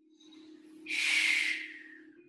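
A woman's heavy breath out, rising about a second in after a quieter lead-in and fading away over the next second.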